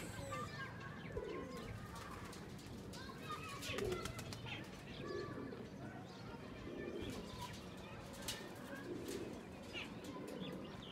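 Racing pigeons at a loft cooing, low repeated coos every second or two, with higher bird chirps in between.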